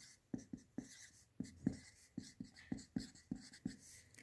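Felt-tip marker writing on paper: a faint, quick run of short strokes, about three or four a second.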